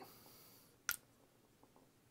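Mostly quiet, with one short, sharp click about a second in as two small vape box mods are handled in the hands.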